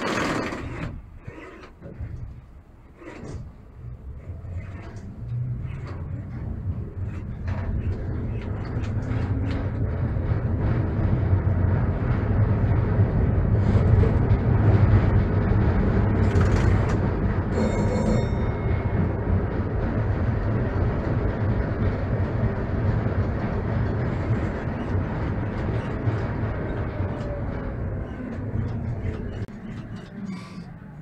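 Konstal 803N tram pulling away and picking up speed, heard from the driver's cab. Traction motor hum and wheel-on-rail rumble build over the first dozen seconds, then run on steadily, with a few clicks early on and a short metallic rattle just past halfway.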